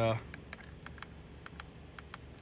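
Several light, irregular clicks from the steering-wheel control buttons of a 2016 Range Rover Evoque, pressed to step back through the instrument-cluster menu.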